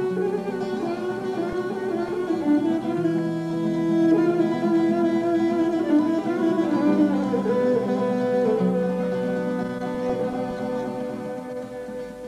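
Bulgarian folk instrumental music: a gadulka bowing a sustained melody over a plucked-string accompaniment, held low notes shifting every few seconds. The playing tails off near the end.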